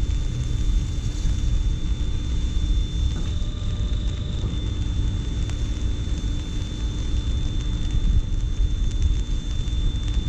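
Steady low outdoor rumble, uneven like wind buffeting the microphone, with a faint steady high-pitched whine over it.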